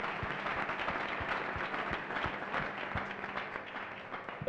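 Congregation applauding: many hands clapping, dense and irregular, at an even level throughout.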